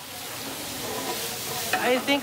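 Sliced vegetables sizzling in a stainless-steel frying pan: a steady frying hiss that slowly grows louder. A voice comes in near the end.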